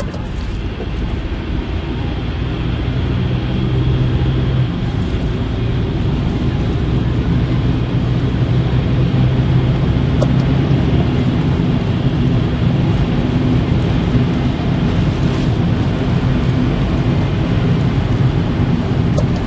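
Car engine and tyre noise on a wet, slushy road, heard from inside the cabin, growing louder over the first few seconds as the car picks up speed, then steady while cruising.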